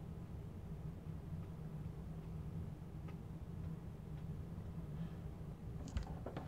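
Steady low room hum with a few faint ticks of an alcohol marker working on paper, and a sharper click near the end as a marker is uncapped.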